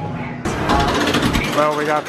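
Background music cuts off about half a second in, giving way to a person speaking over the mechanical noise of a roller-coaster loading station.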